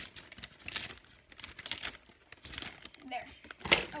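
Clear plastic snack bag crinkling in short irregular bursts as it is cut open with scissors and pulled apart, the loudest crackle coming shortly before the end.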